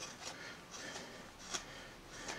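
Small Flexcut No. 11 thumbnail gouge cutting into a wooden carving, a few short, soft scraping strokes with one sharper click about one and a half seconds in.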